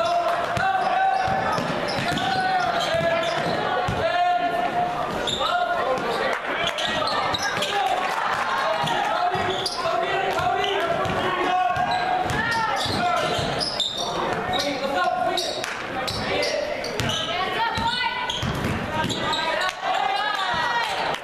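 A basketball being dribbled and bouncing on a hardwood gym floor during play, under steady voices and shouts from players and spectators, echoing in the gym.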